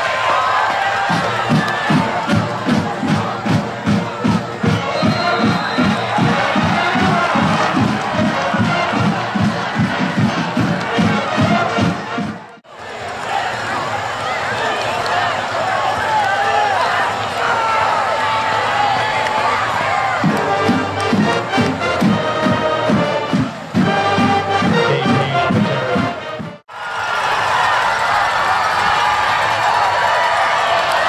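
Football stadium crowd noise with cheering and voices, over a steady drum beat of about three strokes a second, likely a band's drums. The sound drops out abruptly twice, once near the middle and once near the end.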